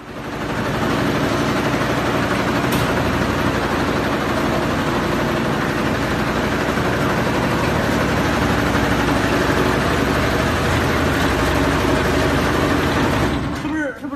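Multi-needle mattress quilting machine running with a loud, steady mechanical noise that starts suddenly and drops away shortly before the end.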